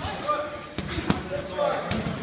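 Boxing gloves hitting a heavy punching bag: a few sharp punches, the clearest a little under a second in and again just after.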